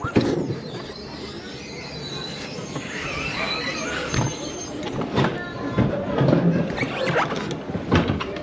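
Alpine coaster sled rolling along its steel rail into the station as it slows, wheels running and squealing on the track, with several sharp clunks.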